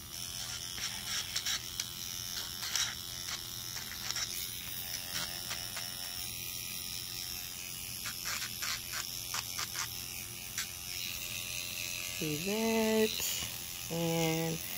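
Handheld electric nail drill with a sanding-band bit running steadily, with short scratchy grinding sounds each time the bit touches a cured UV-resin earring to round off its sharp corners.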